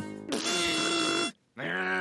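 Cartoon soundtrack: a short grunt, then a held pitched note of about a second that cuts off suddenly, over music.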